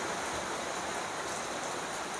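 A steady, even hiss like rain or running water, unchanging throughout.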